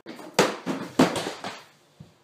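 A quick run of knocks and thumps. The two loudest come about half a second and a second in, with smaller ones between and after, each dying away quickly, and it falls quiet shortly before the end.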